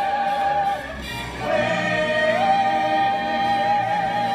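Music with singing: a voice holds a long note with vibrato, breaks off briefly about a second in, then holds another long note that steps up in pitch partway through.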